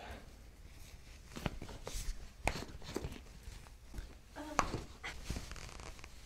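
Scattered soft taps and clicks from hands handling a lying patient's bare feet and ankles at the foot of a chiropractic table, during a leg-length check. A brief murmur of a voice comes about four and a half seconds in.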